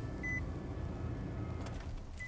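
Low steady rumble in the cab of a Nissan NV200 cargo van, with one short high beep about a quarter second in.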